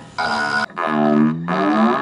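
Battery-powered swizzle-stick drink mixer fitted with a guitar pick, held against the strings of a hybrid junk-built string instrument amplified by a contact microphone, setting off a buzzing, drone-like amplified string tone in three bursts with the pitch bending.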